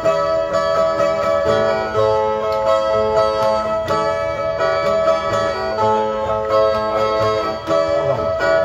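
Two Brazilian cantoria violas (ten-string guitars) playing an instrumental passage: a steady plucked and strummed figure over ringing chords, with no singing.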